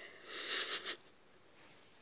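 A single sniff, close to the microphone, about a quarter second in and lasting under a second, followed by quiet room tone.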